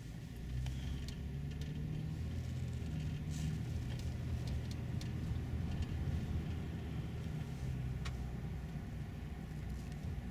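Car engine and tyre rumble heard from inside the cabin of a moving car, a steady low drone that grows louder about half a second in, with a few faint clicks.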